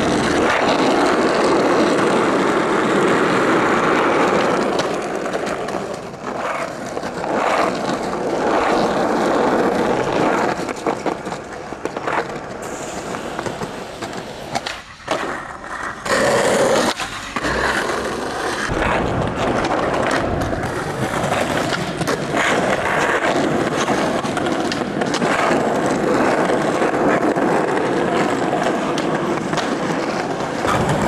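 Skateboard wheels rolling loudly over rough pavement, with scattered sharp knocks of the board against the ground and curb.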